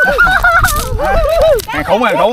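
Excited, high-pitched wordless yelling: a quick run of short calls that each rise and fall in pitch.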